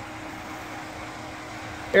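A steady mechanical hum with no distinct events.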